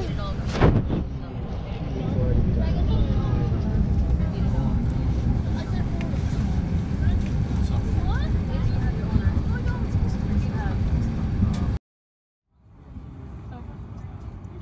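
Airliner cabin noise during boarding: a steady low rumble with passengers talking in the background, and a brief loud knock just under a second in. Near the end the sound cuts out for about half a second, then returns as a quieter steady hum.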